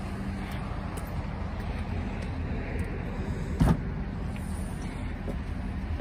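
A steady low vehicle hum, with one sharp click about three and a half seconds in as the rear hatch of a 2019 Subaru Crosstrek is unlatched and lifted open.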